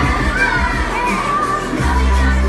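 A group of young children shouting together, their high voices rising and falling, over a pop song playing in the room. The song's bass drops back for most of the moment and returns strongly near the end.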